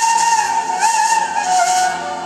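A wind instrument in traditional music holding a long, high melody note that bends and slides with small ornaments, dropping a step near the end, over a steady hiss.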